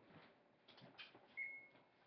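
Near silence: room tone with a few faint clicks and one brief faint high tone about one and a half seconds in.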